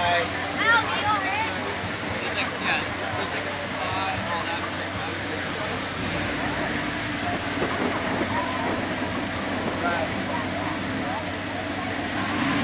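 Audi R8's engine running at low revs, a steady low note that gets a little stronger about halfway through, under the chatter of people standing nearby.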